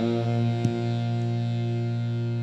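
Harmonium holding a sustained chord between lines of the chant, the reeds sounding one steady, unchanging drone. There is a faint click about two-thirds of a second in.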